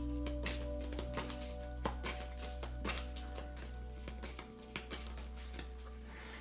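Soft background music of long held tones, with scattered faint clicks and taps throughout.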